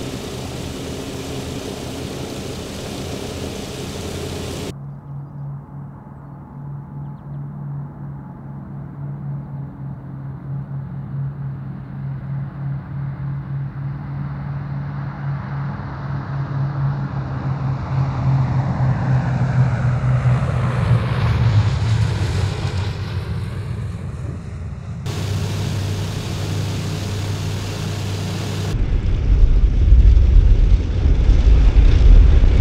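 Lockheed C-121A Constellation's four radial piston engines. First comes their steady drone heard inside the cockpit, then the aircraft on the runway, its engine noise building as it comes nearer and peaking about two-thirds of the way through with a sweeping, phasing sound. Near the end a close, deep engine rumble takes over as it taxis past.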